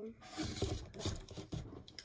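Handling noise close to the microphone: soft rustling and low bumps from hands moving near the device.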